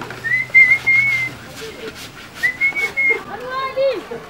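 A person whistling: two short, high, nearly steady whistled phrases, the second starting about two seconds after the first. A voice starts near the end.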